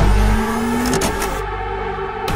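A sound-effect vehicle engine revving, its pitch rising slightly through the first second and then settling to a steadier run.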